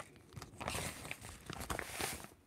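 Irregular crinkling, rustling and small clicks of something being handled at close range.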